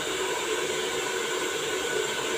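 Handheld hair dryer running steadily, blowing air over short hair, a constant rushing noise with a faint steady hum.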